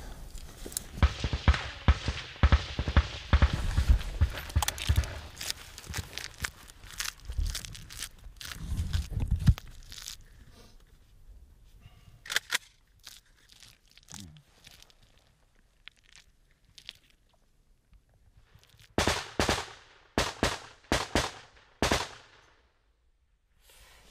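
Outgoing machine-gun fire. The first ten seconds hold a dense jumble of cracks and crunches, then comes a quieter spell with scattered clicks. Near the end there is a run of about eight loud, separate shots over some three seconds.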